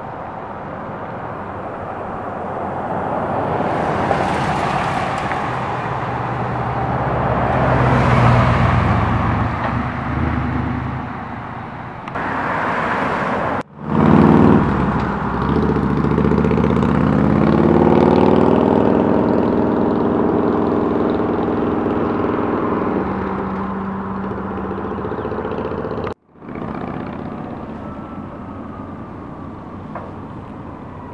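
Road vehicles passing close by with tyre and engine noise, swelling past twice, about four and eight seconds in. After a sudden break, an engine climbs steadily in pitch for several seconds as a vehicle accelerates.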